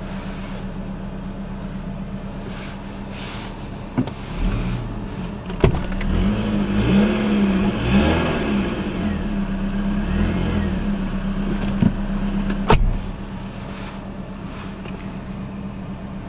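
BMW 3 Series (E46) engine idling, heard inside the cabin as a steady hum, with a louder stretch of shifting tones and a few clicks through the middle.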